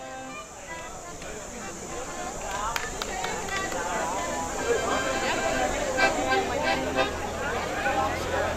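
Several people talking indistinctly at once, growing louder, with a few sharp knocks from microphones on their stands being handled.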